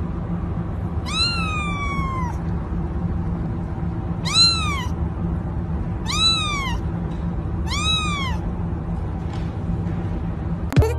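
A young kitten meowing four times in a high voice. The first is one long call that falls in pitch, about a second in; three shorter meows that rise and fall follow about two seconds apart.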